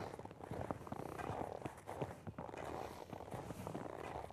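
Skis crunching and scraping on groomed snow, step by step, as a skier side-steps up a slope with the skis edged into the hill. Faint and irregular.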